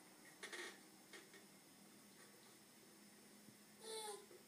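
Near silence, with a few faint rustles in the first second or so. Right at the end a baby gives a short vocal sound.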